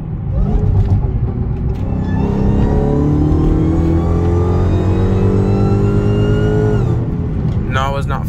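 Dodge Charger SRT Hellcat's supercharged 6.2-litre V8 under hard acceleration, heard from inside the cabin. The engine note rises steadily for about five seconds, with a high whine climbing alongside it, then drops sharply about seven seconds in.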